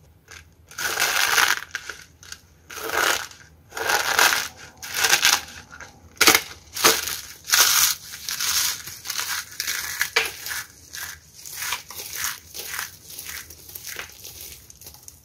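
A heart-shaped box of dried soap packed with soap starch strands being crushed and crumbled in the hands: a series of dry crunches, about a dozen, louder in the first half and smaller toward the end.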